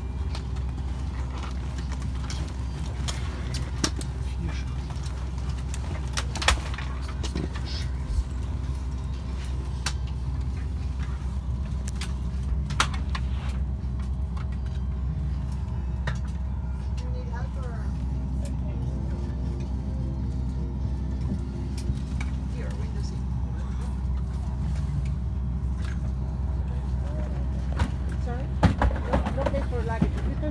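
Steady low hum of an airliner cabin's ventilation while parked at the gate, with scattered clicks and knocks and faint passenger chatter in the background.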